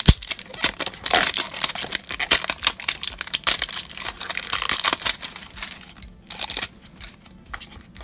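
A small cardboard blind box being torn open and handled by hand: crinkling, tearing and rustling of thin card and paper, with many small clicks and a sharp knock right at the start.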